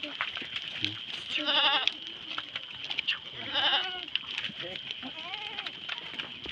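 A herd of goats bleating: two loud, quavering bleats about one and a half and three and a half seconds in, with softer calls after them.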